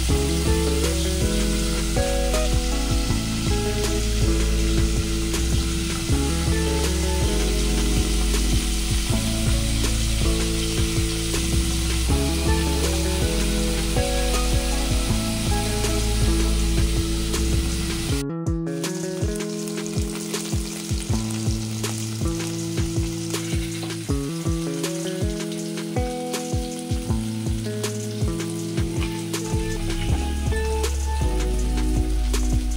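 Paneer cubes sizzling as they fry in oil in a pot, under background music. The music breaks off for a moment a little past halfway and comes back with a steady pulsing beat.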